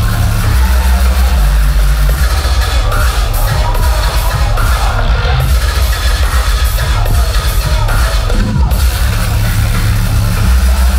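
Loud bass-heavy electronic dance music played over a club sound system, with deep sub-bass notes that change in a choppy pattern.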